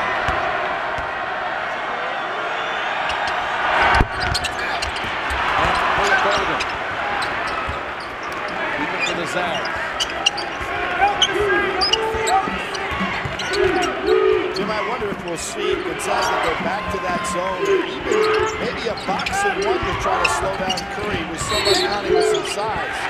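Live college basketball game sound in a large arena: a basketball bouncing on the hardwood court and many short squeaks from players' shoes over a steady crowd murmur, with one sharp knock about four seconds in.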